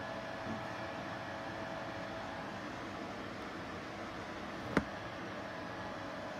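Steady background hiss with a faint hum, broken once, a little under five seconds in, by a single sharp tap as the cardboard box is handled.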